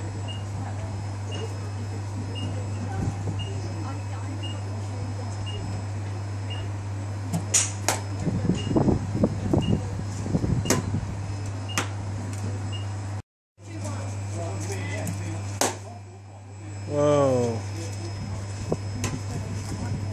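Several sharp knocks of a metal baseball bat striking pitched balls, over a steady low hum.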